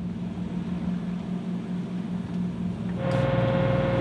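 Steady low drone of a ship's machinery heard inside the vessel. About three seconds in it grows fuller and a steady higher-pitched hum joins it.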